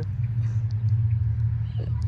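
Steady low rumble of outdoor background noise, with a few faint short sounds over it.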